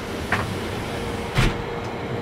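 Distant thunder rolling as a low, uneven rumble under a steady hum, with two brief noises about a third of a second and a second and a half in.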